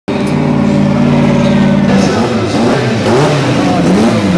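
Bentley Continental GT3 race car's engine running at a steady pitch, then revved up and down repeatedly over the last two seconds.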